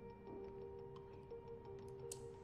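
Quiet film score: held, sustained notes with a steady, fast clock-like ticking over them.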